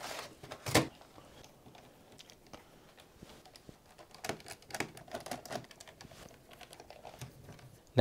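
Phillips screwdriver backing screws out of a laptop's plastic bottom case: scattered light clicks and taps of the driver tip and handling on the case, the loudest just under a second in.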